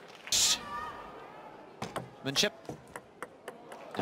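Table tennis serve that goes into the net: a crisp tick of the bat on the ball, then a run of light clicks as the celluloid ball hits the net and bounces out on the table. A brief loud hiss comes just before, near the start.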